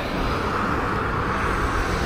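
Road traffic noise from a vehicle passing on the road, a steady rushing sound that swells a little through the middle.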